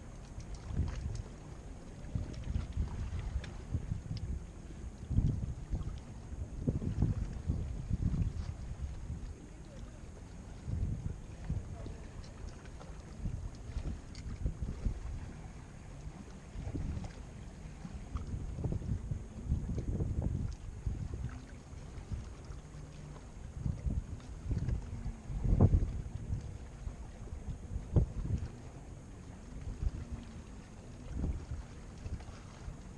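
Wind buffeting the microphone in irregular low gusts, with the strongest gust near the end.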